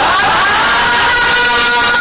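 A loud, sustained horn-like chord of several steady pitches. It starts suddenly with a brief upward slide, then holds level.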